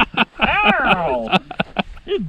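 People's voices, talking or laughing in a short burst, with a few short clicks scattered through.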